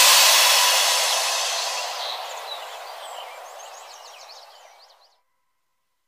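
An electronic music track ends in a wash of hiss-like noise that fades out steadily over about five seconds, with a few faint short high chirps in it.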